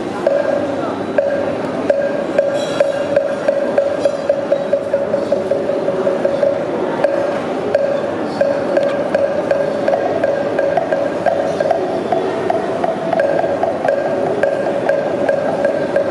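A steady droning tone held on one pitch, like a voice chanting or music, over an even knocking beat of about three strikes a second that grows softer in the second half.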